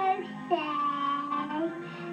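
A young girl singing: one note ends just after the start, then she holds a long note from about half a second in.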